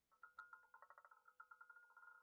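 Faint roulette-game sound of the ball clattering over the wheel's pockets: a run of quick ticks that settle into a steady tone near the end as the ball comes to rest.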